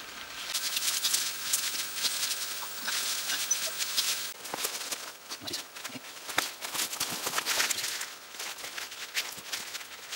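Dry twigs, brush and moss crackling and rustling in quick irregular snaps as someone moves about close by, reaching in to pick chanterelles.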